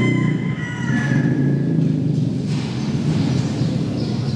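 Steady low background rumble, with a thin high ringing tone over roughly the first two seconds.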